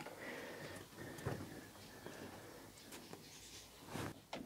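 Faint rubbing and scraping with a few light knocks, as a slatted pine ceiling panel is pushed up against the van roof and shifted into place.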